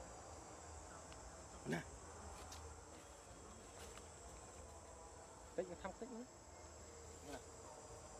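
Steady drone of insects with a thin high whine, faint and unbroken. A short voice-like call about two seconds in and a quick cluster of them near six seconds stand out above it.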